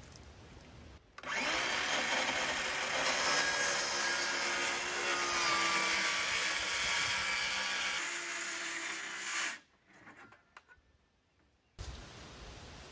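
Cordless power saw spinning up about a second in and cutting through a sheet of plywood along a chalk line, running steadily for about eight seconds before stopping abruptly.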